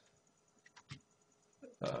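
Quiet room tone with two faint computer-mouse clicks a little under a second in, then a man's voice starting an 'um' near the end.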